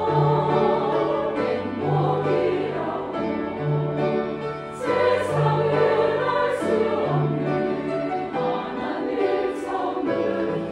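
A choir singing in sustained phrases with grand piano accompaniment, the piano's low notes repeating in a regular pattern beneath the voices.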